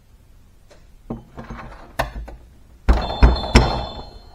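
Steel hydraulic cylinder rod and its parts knocking on a steel workbench: a few light clicks, then three heavy metallic thunks close together near the end, with a brief ringing.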